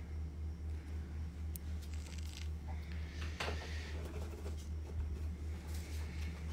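A pen scratching on paper, crossing out a written price and writing a new one, in a few short strokes. Under it runs a steady low hum with an even pulse.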